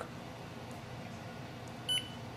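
Canon MAXIFY GX4060 printer's touchscreen control panel giving one short, high beep near the end, confirming the tap that selects a Wi-Fi network; before it only low room tone.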